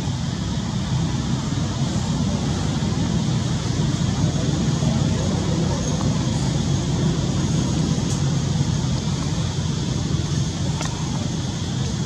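Steady low rumbling background noise, even throughout with no distinct events.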